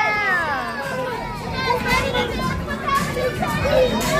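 A crowd of children chattering and shouting, many voices overlapping, with a long held cry that falls away in the first second.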